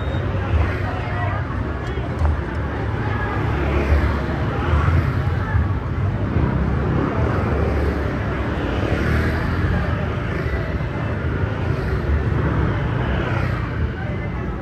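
Motor scooters passing one after another on a busy street, their engines swelling and fading, over a steady low traffic rumble and voices.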